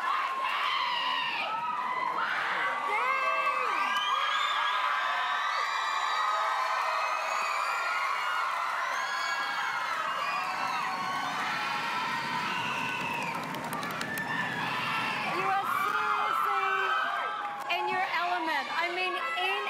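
Studio audience cheering and screaming, many high voices whooping over one another, with a crowd roar that swells about two-thirds of the way through.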